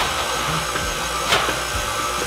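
KitchenAid stand mixer running steadily as it beats cookie batter in its steel bowl, with one light knock past the middle.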